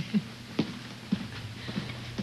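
A few scattered footsteps on a hard floor, over a low steady hum.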